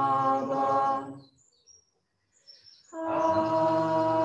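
Devotional chanting in long, steady held notes. It breaks off about a second in for a pause of nearly two seconds, then resumes on a new note.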